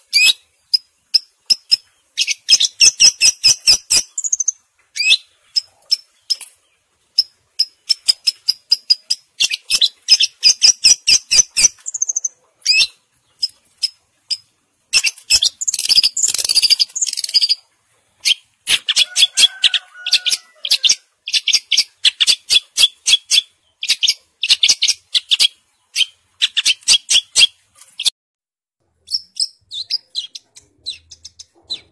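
Caged long-tailed shrike (cendet) singing hard: rapid runs of sharp, high, clipped notes in bursts of a second or two, with short pauses between. About halfway through comes a harsher, grating stretch of about two seconds, and the song stops a couple of seconds before the end.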